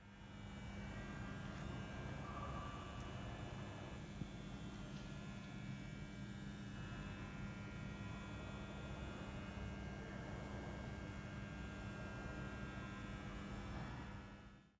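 Steady low hum with a faint rumble beneath it: room tone in a quiet gallery hall, with a single faint tick about four seconds in.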